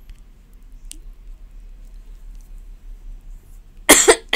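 Quiet room tone with a faint tick about a second in, then near the end a sudden loud burst, a person starting to clear their throat or cough.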